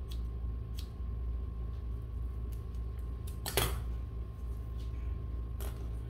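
Hair-cutting scissors snipping through hair a few times, each snip a sharp click, the loudest about three and a half seconds in, over a steady low hum.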